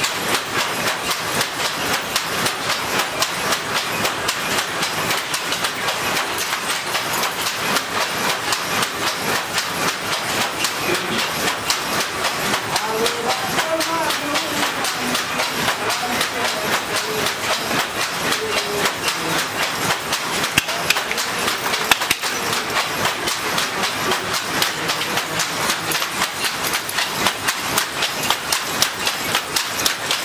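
Wooden hand looms clattering as they weave: a dense, steady run of sharp knocks from the shuttles being thrown and the battens beating up the weft, several looms working at once.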